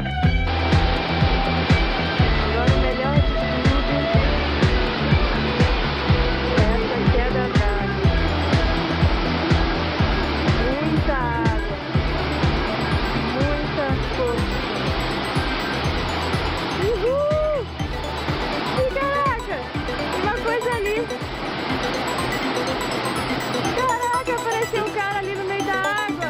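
Rushing water from a waterfall under background music with a steady ticking beat and low held notes. The water sound sets in about half a second in and thins out about two-thirds of the way through, while the music carries on with a few sliding tones.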